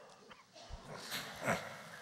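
A man's nose and breath sounds, muffled by the cloth of the robe he holds over his nose and mouth: short sudden bursts that fall in pitch, the loudest about one and a half seconds in.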